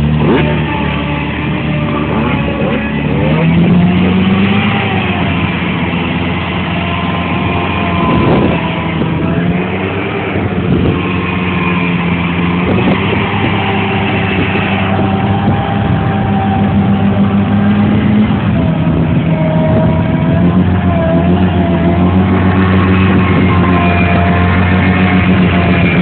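Jeep Wrangler engine running hard and revving under load, its pitch rising a few seconds in and wavering up and down, while the tires churn through mud and water. The engine grows slightly louder near the end.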